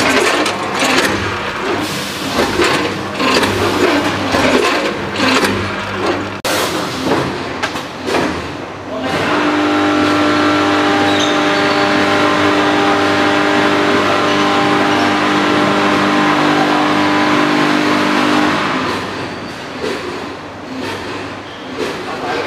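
Multihead weigher and vertical form-fill-seal packing machine running. Irregular mechanical rattling and clatter, with a sharp click about six seconds in, gives way at about nine seconds to a steady hum with several held tones. The hum stops after about nine seconds, when the clatter returns.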